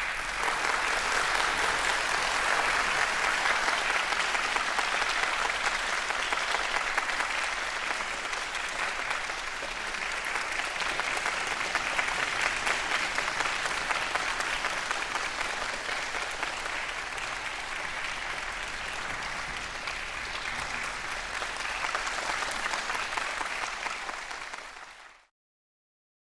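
Audience applauding steadily after a mandolin orchestra performance ends, the clapping cutting off suddenly near the end.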